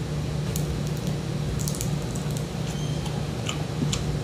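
Mouth sounds of someone chewing a freshly fried ube-and-cheese roll in a fried wrapper, with a few short crunching clicks scattered through. A steady low hum runs underneath.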